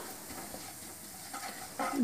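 Cumin seeds sizzling faintly in hot oil in a nonstick wok as a wooden spatula stirs them: the tempering of whole cumin at the start of a curry base.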